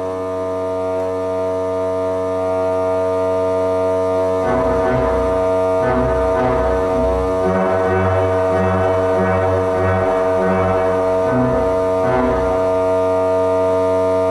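Pipe organ playing: held chords for the first few seconds, then moving bass and middle lines from about four and a half seconds in. Under it all runs an unbroken low note, the ciphering bottom F sharp of the pedal Trombone stop, a pipe stuck sounding whatever is played.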